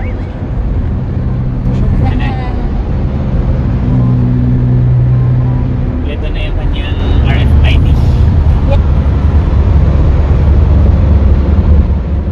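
Road noise inside a moving vehicle on an expressway: a steady low rumble of engine and tyres, with a brief hum a few seconds in, growing heavier over the second half.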